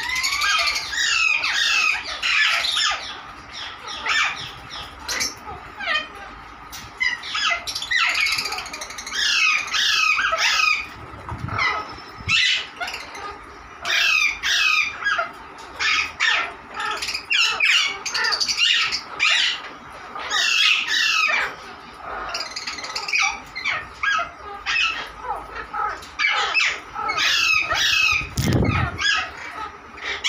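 Aviary parakeets squawking and chirping: many short, harsh calls overlapping with only brief gaps, with a low rumble near the end.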